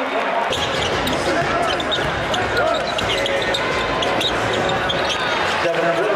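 Basketball game sounds in an arena: a crowd murmuring throughout, with sneakers squeaking on the hardwood floor many times and a basketball bouncing.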